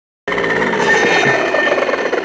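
Bu-Ko 52cc two-stroke brush cutter engine running with its blade fitted, cutting in abruptly a quarter of a second in and holding a steady, high-pitched buzz.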